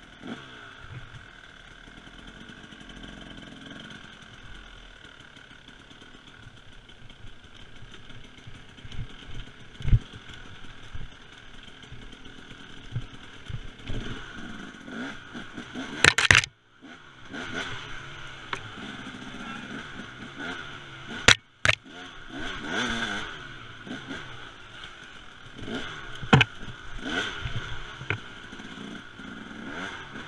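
Two-stroke single-cylinder engine of a Husaberg TE300 enduro bike running and revving on a rough woods trail, with sharp knocks and clatter as the bike hits bumps. The sound drops out briefly twice, just after the loudest knocks.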